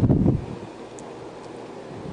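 Wind buffeting the microphone: a strong low gust in the first half second, then steadier, quieter wind noise.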